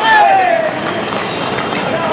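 Hooves of horse-drawn tongas clopping on the road amid crowd noise, with a voice calling out, falling in pitch, near the start.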